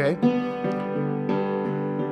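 Master Works DulciForte hammered dulcimer, its strings struck with hammers: about three notes of a G chord on the extended right-side range, each ringing on with long sustain and overlapping the next.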